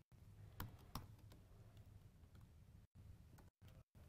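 Faint computer keyboard keystrokes in a quiet room: two clearer clicks about half a second and a second in, then a few lighter taps.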